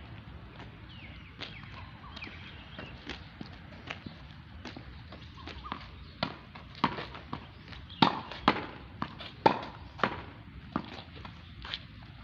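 Tennis ball being hit against a practice wall: sharp pocks of the racket strings striking the ball, the ball hitting the wall and bouncing on the hard court. The strikes come irregularly, loudest and quickest, about one a second or faster, from about eight to ten seconds in.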